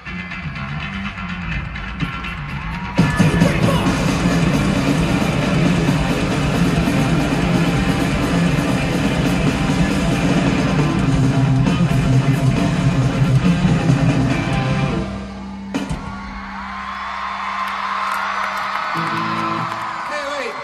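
A pop-punk band plays live, with distorted electric guitar, bass guitar and drums, growing much louder about three seconds in for the rest of the song. The band stops abruptly about fifteen seconds in, leaving a held note ringing under crowd yelling.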